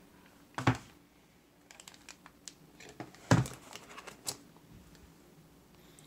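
A cardboard laptop box being handled on a desk: two sharp knocks, the first under a second in and the louder one past three seconds, with light ticks and rustles of cardboard and plastic packaging between them.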